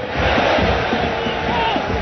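Football stadium crowd singing and chanting in the stands, a steady mass of many voices.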